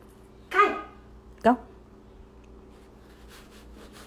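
Dog barking twice: one call about half a second in that drops in pitch, then a short, sharp bark about a second and a half in.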